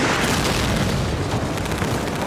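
Artillery shell bursting close by, a heavy blast of noise that carries on unbroken as a dense rumble with no let-up.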